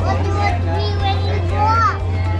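Young children's voices chattering and exclaiming, with one high rising-and-falling exclamation near the end, over a steady low hum.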